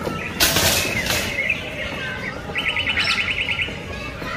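Birds chirping, with a fast trill of about a dozen notes a second in the second half. About half a second in, and again at about one second, come two short rushing bursts of noise, the loudest sounds here.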